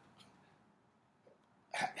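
A man's lecturing voice in a short pause: faint room tone with a small breath-like sound just after the start, then his speech resuming near the end.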